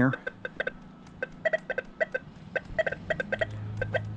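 XP Deus II metal detector giving many short, irregular beeps, chattering from electromagnetic interference. A steady low hum comes in about three seconds in.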